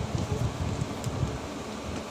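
Low, irregular rustling and rumbling of a handheld phone's microphone being rubbed and moved.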